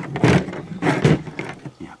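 A man's voice, with light clicks from a ratcheting PEX cinch clamp tool and a cinch clamp being handled.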